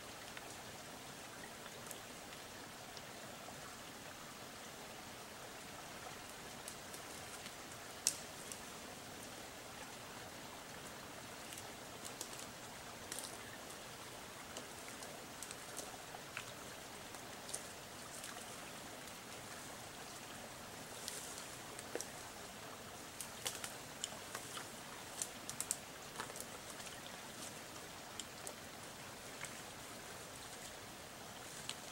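Faint, steady trickle of water with scattered sharp snaps and clicks of sticks and brush underfoot as a hiker crosses a weathered beaver dam. The snapping grows more frequent and louder toward the end as he comes closer.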